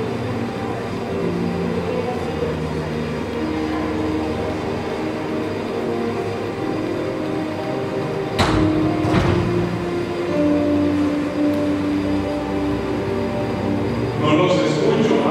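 Soft, sustained chords on an electronic keyboard, held and changing slowly. Two brief knocks come about eight and nine seconds in.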